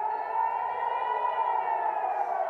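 Israeli Red Alert civil-defence siren wailing, its pitch rising slightly and then sinking slowly. It is the warning that rockets are being fired from Gaza.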